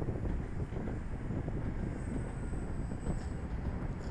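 Passenger train running past, a steady low rumble, with wind buffeting the microphone.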